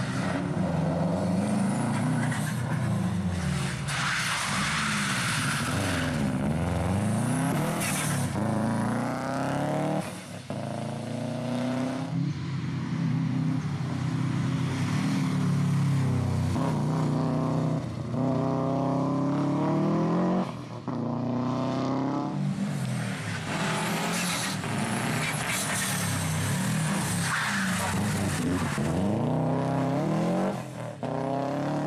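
Rally car engines revving hard and dropping back again and again through gear changes as the cars accelerate out of and brake into tight turns, with several short rushes of noise. The sound breaks twice as it cuts between separate passes.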